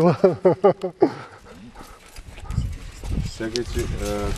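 A person's voice in short, quickly repeated syllables for about the first second. After that comes a quieter stretch with a low rumble and a few brief bits of voices.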